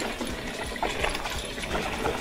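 Mountain bike rolling down a rough dirt singletrack: a steady rushing noise from the tyres and the moving bike, with a few small knocks and rattles.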